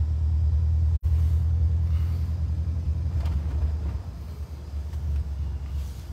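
Low, steady rumble of a moving pickup truck, engine and road noise heard from inside the cab, easing a little in the second half. The sound cuts out for a split second about a second in.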